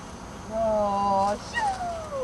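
A woman's voice holds one long call at a level pitch, a command sending the dog off. Just after it comes a high dog whine that falls in pitch.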